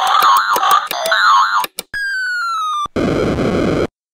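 Cartoon sound effect of the Hand-Powered Recovery Center machine working: a warbling electronic bleeping over a rapid run of clicks, then a falling tone for about a second, then a harsh buzz for about a second that cuts off suddenly.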